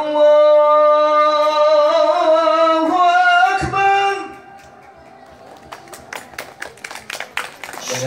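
A man's voice through a PA microphone holding long, wavering sung notes, stepping up in pitch twice before stopping about four seconds in. A much quieter stretch with scattered small clicks follows.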